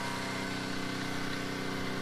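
A pressure washer's engine running at a steady, even speed, a constant hum with no change in pitch.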